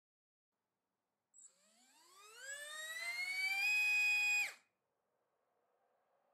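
iPower Force iF1606-4100KV brushless motor with a DYS 3030x3 three-blade 3-inch prop on a thrust stand, spinning up from a standstill on 4S. It gives a high whine that climbs steadily in pitch for about two seconds, holds at its top speed briefly, then cuts off suddenly.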